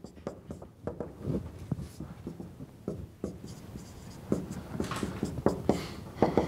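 Marker writing on a whiteboard: a rapid run of short strokes and taps as words are written out, with a few longer strokes near the end.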